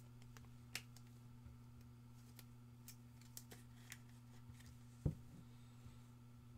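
Faint handling of trading cards: a few light clicks and ticks as cards are moved, and a soft thump about five seconds in, over a steady low electrical hum.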